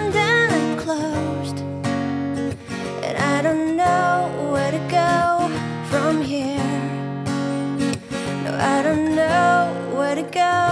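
A woman singing with strummed acoustic guitar accompaniment, her voice gliding between long held notes over steady chords.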